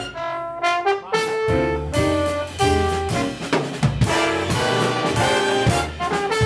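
Jazz big band playing live: trumpets, trombones and saxophones in ensemble over drum kit and bass. The sound thins briefly at the start, then the full band comes back in about a second in.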